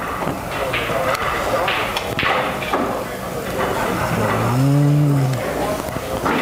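A man's low, drawn-out hum, held for about a second and a half with its pitch rising and falling, comes in past the middle over a faint murmur of voices in the room.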